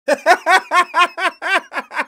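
A man laughing out loud in a steady run of short "ha" pulses, about four or five a second.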